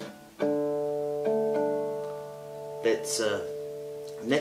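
Nylon-string classical guitar in drop-D tuning, with notes plucked about half a second in and again about a second later, each left to ring and slowly fade. A short bit of voice comes near the end.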